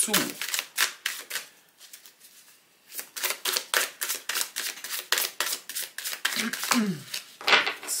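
A deck of tarot cards being shuffled by hand: a fast run of light card clicks, about six a second, that stops for about a second, then starts again and runs until just before the end.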